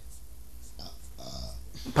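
Quiet pause with a low steady hum and a few faint, short vocal sounds from a person about a second in.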